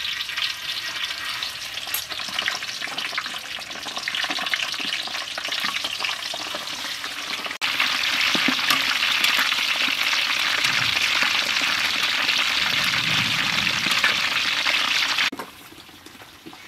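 Pieces of pig leg deep-frying in a wok of hot oil: a dense, steady crackling sizzle. It gets louder suddenly about halfway through and cuts off near the end.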